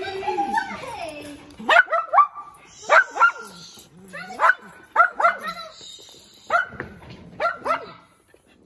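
A dog barking: about ten short, sharp barks, coming in quick pairs and singles a second or so apart.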